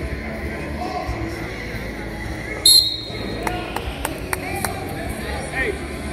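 A referee's whistle blows once, short and shrill, about two and a half seconds in, stopping the wrestling action. Around it, shoes squeak on the mats against the hubbub of a large gym.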